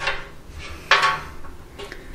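Two short clattering knocks on the bolted sheet-metal belly pan, about a second apart, each with a brief ring, as a hand works in underneath it.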